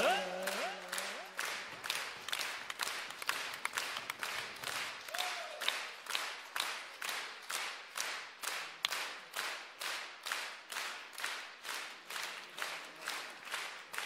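Concert hall audience clapping in unison, a steady rhythm of about two and a half claps a second.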